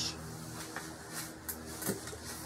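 A few faint clicks and knocks from a rifle being handled on a shooting bench, over a low steady hum.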